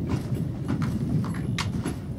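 A horse's hooves knocking on a trailer's ramp as it walks up into a horse trailer, about seven hoof strikes in two seconds, over a steady low rumble.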